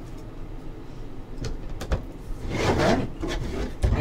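Hard plastic graded-card slabs being handled and set onto a stack on a table: a couple of light clicks, a sliding scrape, then a sharper clack near the end.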